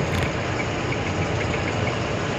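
Truck engine running steadily under way, with road noise, heard from inside the cab.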